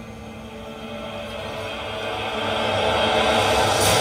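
A film-trailer-style swell in an intro video's soundtrack: a rushing, whooshing rise that grows steadily louder and leads into the title music.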